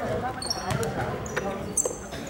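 Basketball bouncing on a hardwood gym floor, a few knocks spread through the moment, with brief high squeaks of sneakers on the court.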